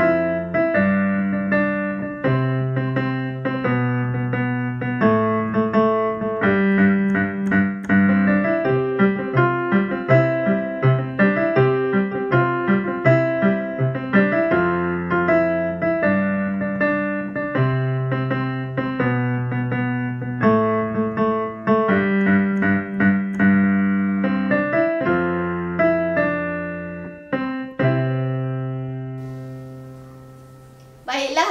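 Background piano music: a gentle melody over held low chords, fading out near the end.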